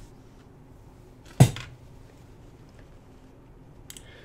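A single sharp knock about a second and a half in, against quiet room tone.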